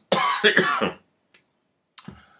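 A man coughs once, for about a second, followed by a faint tick.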